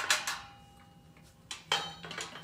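Black wire-mesh metal grate clanking against the cross-shaped metal base of a solar tracker stand as it is fitted in place: a sharp clank at the start with a ringing tone that lingers about a second and a half, then two more clanks near the end.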